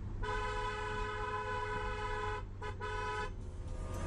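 A car horn sounding one long honk of about two seconds, then a very short toot and a second, shorter honk, over the low steady rumble of a vehicle driving.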